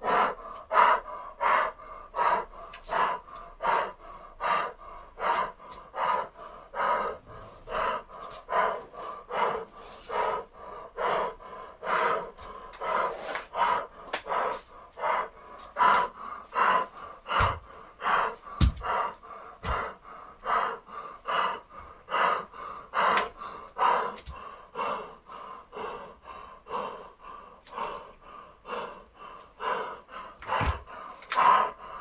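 A man breathing hard and fast, about two breaths a second: he is out of breath from strenuous circuit training. A few dull low knocks come a little past the middle.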